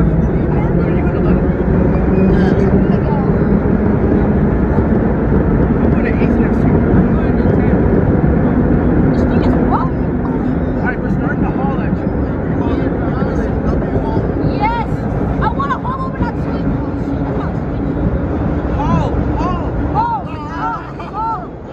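Vintage R1 subway car running through a tunnel: loud steady traction motor hum and wheel-on-rail noise, easing a little about halfway through, with short high squeals in the second half.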